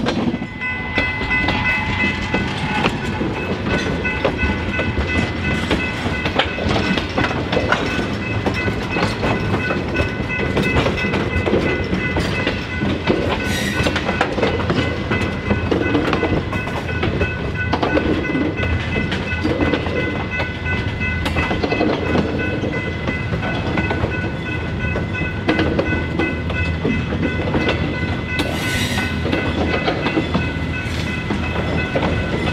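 A train passing close by with continuous rolling noise and a steady high whine. Wheels clatter over rail joints about every two seconds.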